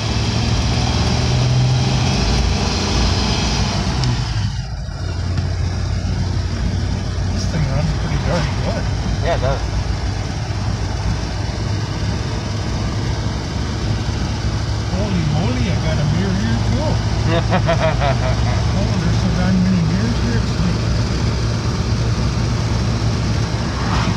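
The 1938 Graham's supercharged straight-six running steadily as the car drives along, heard from inside the cabin with road noise. The sound drops briefly about four and a half seconds in.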